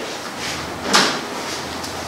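A single sharp knock a little before the middle, over a steady hiss of room noise.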